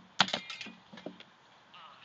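Swords and shields clashing in sword-and-shield sparring: a quick run of sharp knocks about a quarter second in, the first and loudest with a short ring, then a few lighter hits around a second in.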